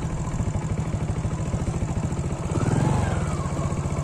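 A vehicle engine running steadily, swelling briefly and easing off again a little past the middle.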